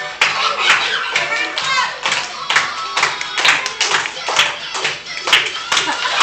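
A group of children clapping along in a steady rhythm, about two claps a second, with music and children's voices underneath.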